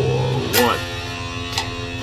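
Electric guitar playing a slow power-chord riff at 60 beats a minute, chords ringing between strums: a strong strum about half a second in and a lighter one past the middle.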